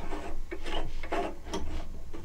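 Hands handling the plastic drying-fan attachment on a record-cleaning rack: a run of short, irregular rubbing and scraping sounds with light knocks, over a low steady hum.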